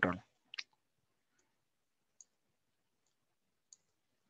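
Faint computer keyboard and mouse clicks while code is being edited: about five short, sparse clicks spread over a few seconds, with near silence between them.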